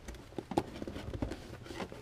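Scattered light knocks and clicks of hard parts bumping together, as a small nitro engine is worked into place on a crowded shelf among other engines and tuned pipes.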